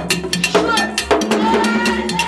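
Haitian Vodou ceremonial music: hand drums beat a fast, steady rhythm of sharp strikes while women sing a chant in long, held notes.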